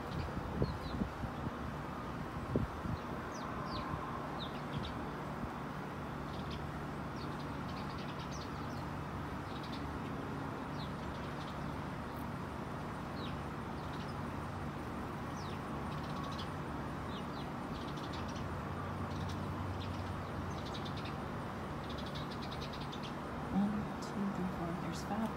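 A flock of house sparrows chirping in a bush: many short, separate chirps scattered throughout, over a steady low background rumble.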